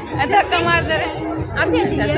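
Several voices talking over one another: chatter with no other distinct sound.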